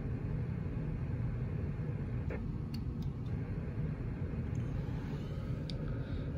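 Steady low rumble of room background noise, with a few faint clicks.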